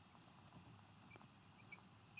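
Faint squeaks of a marker pen writing on a glass lightboard, several brief high chirps in the second half, over near-silent room tone.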